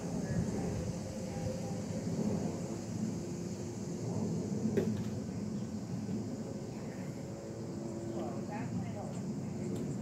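Steady outdoor background hum with a faint, even high-pitched drone above it, and a single light knock about five seconds in as a stemmed glass is set down on a glass tabletop.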